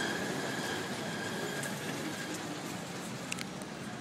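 Street traffic noise: a steady wash of distant engines and road noise, with a faint high steady tone that fades out a little past halfway and a couple of light clicks near the end.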